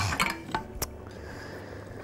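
Two light clinks of a metal spoon against a cooking pot, about half a second apart, near the middle, over a quiet kitchen background.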